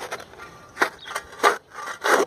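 Short gritty scraping strokes in dirt and gravel, about three a second, growing louder toward the end.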